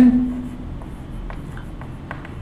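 Chalk writing on a chalkboard: a few faint strokes of the chalk. A man's drawn-out last word fades out in the first half second.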